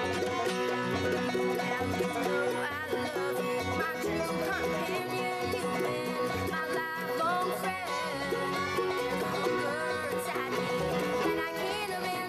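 Acoustic bluegrass band playing an instrumental passage with no singing: banjo, guitar, mandolin, fiddle and upright bass together.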